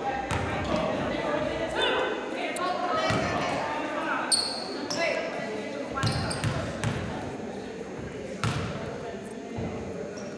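Basketball bouncing several times on a hardwood gym floor, mixed with voices, all echoing in a large gymnasium.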